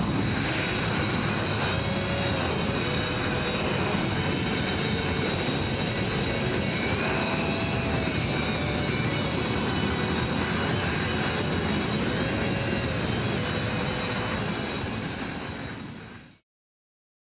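Jet engines of Kawasaki T-4 trainers taxiing, a steady roar with a constant high whine, under background music; it all fades out at the end.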